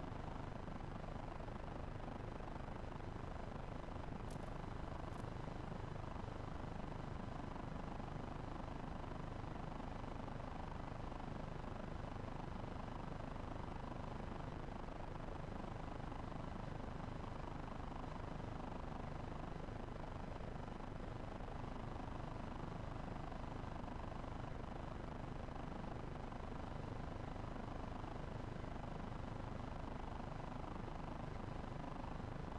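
Steady low rumbling background noise with no clear pitch or rhythm, and two faint sharp clicks about four and five seconds in.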